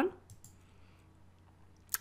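A single computer mouse click near the end, after a near-silent pause.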